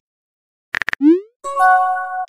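Synthesized chat-message sound effect: a few quick clicks, then a short rising pop, then a bright electronic chime, starting about three-quarters of a second in.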